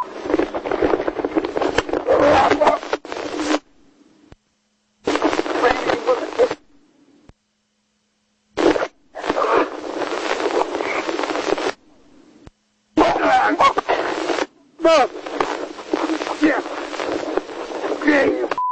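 Harsh, distorted sound from a police officer's body microphone during a physical struggle: loud rustling and muffled, unintelligible yelling. It comes in bursts and cuts out to silence four times.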